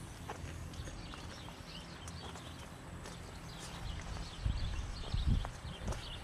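Footsteps of people walking along a garden path, with scattered light clicks. A few low rumbles of buffeting on the microphone come in about four and a half seconds in.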